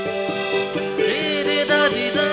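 Background music: a steady low drone under a melodic line that bends and glides in pitch.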